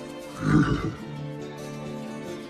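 A horse gives one short, loud call about half a second in, over background music with steady held tones.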